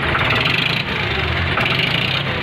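An engine idling steadily. Its low rumble swells for about a second in the middle.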